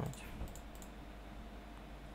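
A few faint computer mouse clicks in the first second, as checkboxes are cleared in a spreadsheet filter list, over a steady low hum.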